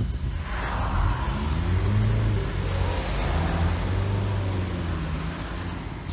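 Car engine and road noise heard from inside a moving car. The engine hum rises and falls a little, and a rush of wind and tyre noise swells from about half a second in.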